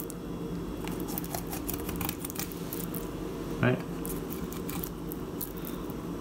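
Fillet knife scraping along a branzino's backbone, a run of light, irregular clicks and scratches as the blade rides over the bones.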